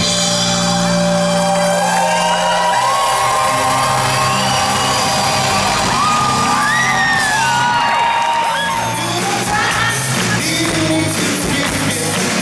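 Live rock band playing in a large hall, heard from within the audience. A held chord over the bass opens, then audience voices whoop and sing over the band.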